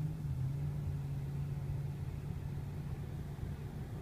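Car cabin noise while driving: the engine's steady low hum over a continuous road rumble from the tyres.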